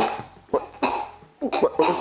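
Several short coughs, voiced for a puppet character choking on a crayon.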